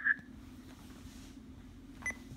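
A handheld digital scanner in a gap between played-back radio transmissions. A radio voice cuts off right at the start, leaving a faint steady low hum and hiss.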